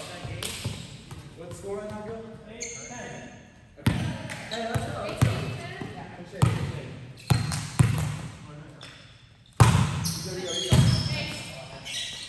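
A volleyball being struck by hands and arms in a rally, a series of about seven sharp slaps echoing in a large gymnasium. The hardest hits come near the end.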